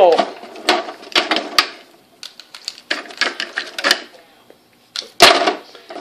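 Plastic wrestling action figures clacking and knocking against each other and the toy ring as a tackle is acted out: a run of sharp clicks and taps, with one louder hit about five seconds in.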